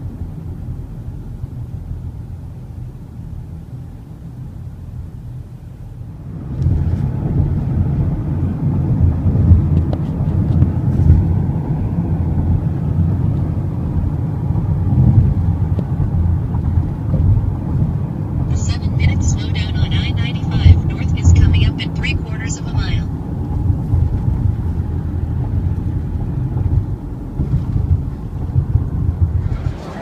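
Road and engine noise heard from inside a moving car: a low rumble that grows much louder about six seconds in and keeps swelling unevenly. A burst of rapid crackling or rattling cuts in for a few seconds past the middle.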